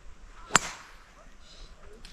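A single sharp click about half a second in, over quiet outdoor ambience with a few faint chirps.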